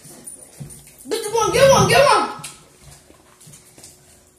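A young girl's voice: one loud, wordless vocal sound, wavering up and down in pitch, starting about a second in and lasting just over a second.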